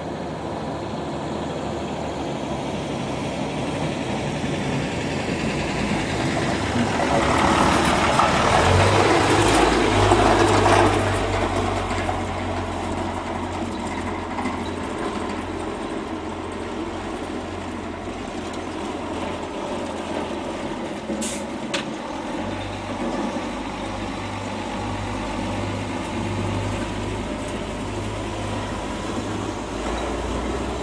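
Diesel engine of a Mercedes-Benz Unimog U1600 truck, intercooled, running as the truck drives, louder for a few seconds about a third of the way in as it comes closest, then a steady low engine note at slow speed. Two brief sharp hissing clicks about two-thirds of the way in.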